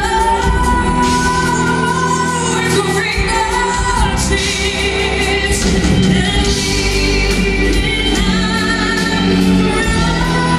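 Live rock band with orchestra and choir playing, with singing over electric guitars and strings, recorded on a phone from the audience in a large theatre.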